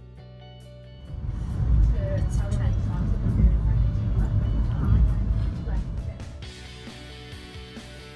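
Background music, with the low rumble of a passenger train carriage in motion rising loudly over it from about a second in and fading out at about six seconds.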